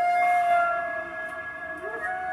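Transverse flute holding one long, steady note that fades after about a second and a half.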